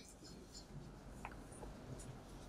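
Very quiet room tone in a pause between spoken phrases, with a couple of faint small ticks about halfway through.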